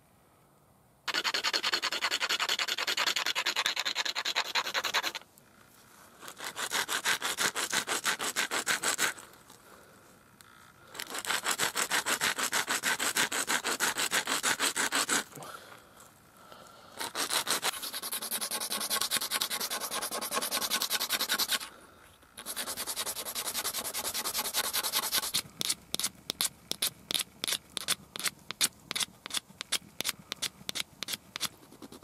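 Antler being ground on an abrasive stone: bouts of fast back-and-forth rasping strokes, each a few seconds long with short pauses between them, then slower separate strokes near the end.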